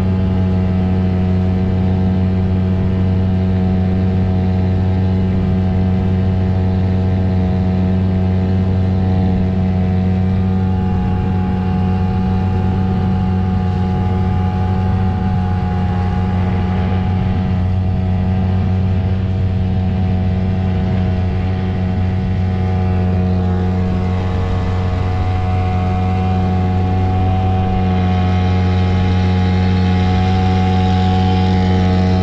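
Hangkai 6 hp outboard motor running at speed, pushing an inflatable boat: a steady, unchanging engine drone.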